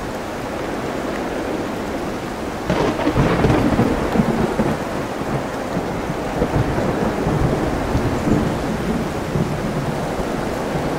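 Steady rain over ocean surf in a continuous wash of noise. A little under three seconds in, a sudden loud crackling rumble breaks in and rolls on, swelling and fading.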